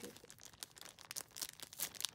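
Clear plastic packaging bags crinkling as they are handled, in quick irregular crackles.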